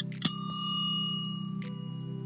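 A single bell ding about a quarter second in, its ringing tones fading over about a second and a half, over steady background music. It is the chime that ends the quiz countdown timer after its ticking.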